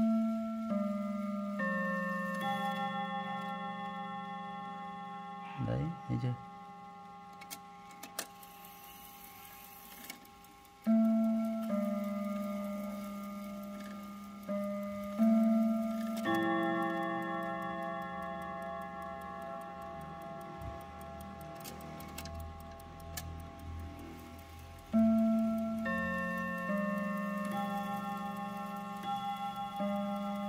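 A mantel clock's five-rod chime movement is playing its chime. Hammers strike five tuned gong rods in phrases of several notes, and each note rings and slowly fades. There is a long pause between the first phrase and the later ones.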